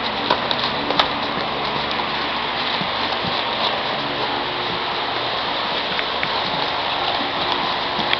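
Steady hiss of room noise, with a few faint knocks from padded gloves during children's sparring.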